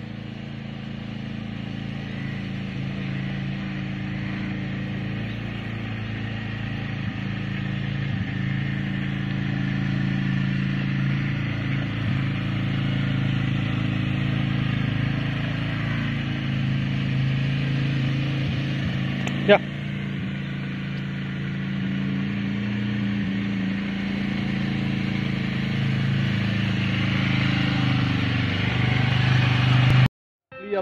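A motor vehicle engine running steadily with a low, even note that slowly grows louder, and one sharp click a little past halfway.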